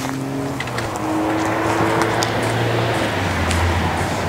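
A motor vehicle running close by: a steady engine hum with road noise that grows louder about a second in and eases slightly near the end.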